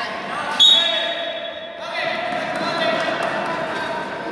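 A referee's whistle blown once, a steady shrill tone lasting about a second, starting just over half a second in.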